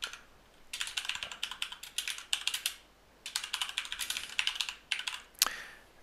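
Typing on a computer keyboard: rapid keystrokes in two runs with a short pause about three seconds in, then a single sharper click near the end.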